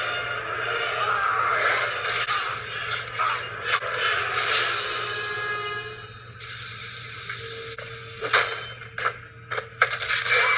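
Horror-film soundtrack played back through a TV and re-recorded: mechanical creaking and ratcheting of a bed being folded up, mixed with score, then several sharp cracks near the end.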